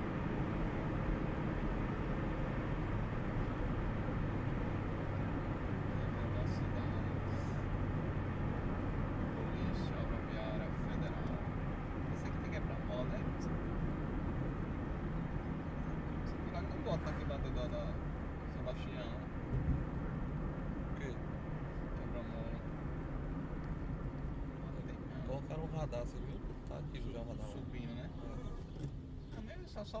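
Steady low engine and tyre noise of a car driving along a highway, heard from inside the cabin, easing off a little in the second half.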